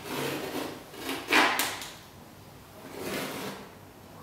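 A knife scraping across a painted canvas propped on a wooden easel, in three rasping strokes. The second stroke, about a second and a half in, is the loudest.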